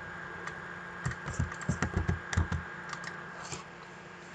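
Computer keyboard keystrokes: a single click, then a quick run of about eight keystrokes lasting a second and a half.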